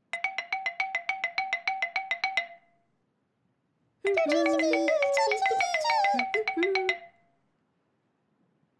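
A cartoon sound effect: a rapid electronic ringing trill, heard twice. The second time, squeaky, gliding puppet-character voices warble over it.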